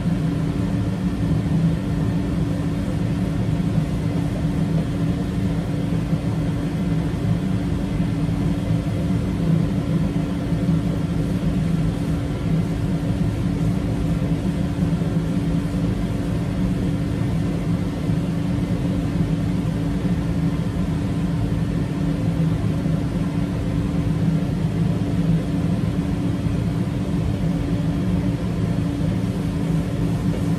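A steady mechanical hum, even and unchanging, with a constant low drone.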